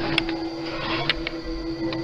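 A few sharp clicks from a clothes dryer's door switch being pressed by hand, about a second apart, over a steady low hum.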